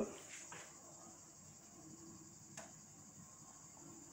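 Near silence: quiet indoor room tone with a faint steady hiss, and a single faint click about two and a half seconds in.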